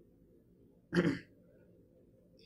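A man briefly clears his throat once, about a second in, a short sound in an otherwise quiet pause.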